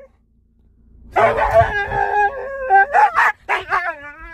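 A Siberian husky 'talking': after a brief hush it starts, about a second in, into a run of loud, drawn-out, wavering howl-like calls, worked up at the sight of a deer.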